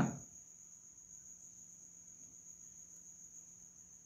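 Near silence: room tone, with a faint, steady high-pitched whine and a low hum.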